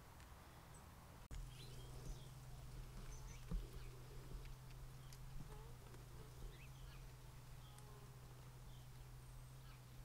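Faint outdoor garden ambience with scattered short bird chirps and a steady low hum that starts about a second in.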